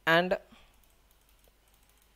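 A few faint, quick clicks of a computer mouse pressing the Backspace key of an on-screen keyboard to erase a file name, after one short spoken word.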